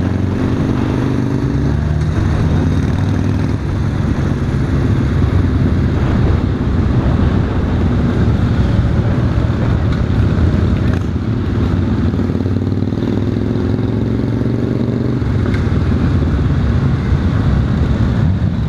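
Honda Valkyrie F6C's flat-six engine running at low road speed, with wind noise over the microphone. The engine note rises gradually about two-thirds of the way in, then drops back.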